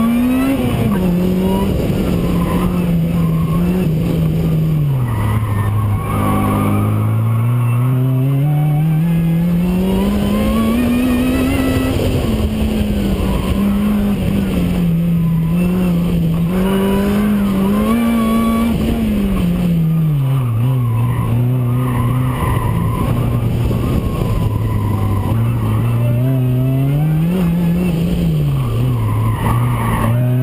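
Supercharged Acura RSX Type S 2.0-litre four-cylinder engine, heard from the hood, revving up and down hard as the car is driven through an autocross course. The Jackson Racing supercharger whines along with the revs, and the tires squeal through the turns.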